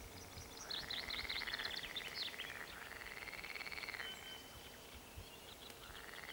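Frogs calling in repeated pulsed trills, each about a second long, one after another with short gaps. Quick high bird chirps sound over the first two seconds.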